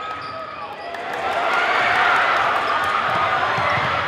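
Basketball game sound in a gym: the ball dribbling and short sneaker squeaks on the court, then crowd noise swelling from about a second in as the play heads to the basket.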